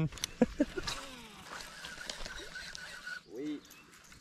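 A man's short laugh at the start, then a quiet stretch with a few faint pitched sounds, including falling glides about a second in and a short call near the end.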